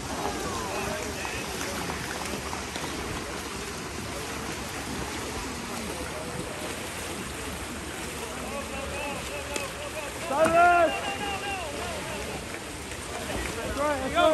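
Water polo players swimming, a steady wash of splashing water, with a voice shouting about ten seconds in.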